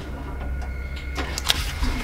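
Hands rummaging through the contents of an open desk drawer: a few sharp clicks and knocks of objects being handled, the sharpest about a second and a half in, over a steady low hum and a faint high whine.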